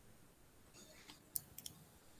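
A few faint, sharp clicks, three in the second half, the first the loudest, over a quiet room.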